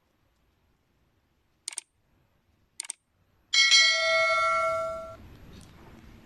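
Two quick double clicks about a second apart, then a loud bell ding that rings for about a second and a half and fades: the click and notification-bell sound effects of a subscribe-button animation.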